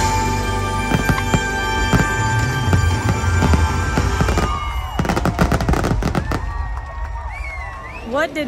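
Fireworks finale: rapid bangs and booms with a deep rumble over loud show music, then a dense run of crackling bursts about five to six seconds in, thinning out near the end.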